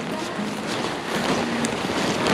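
Rustling of brush and grass, with the nylon paraglider wing brushing along, as someone walks through dense vegetation.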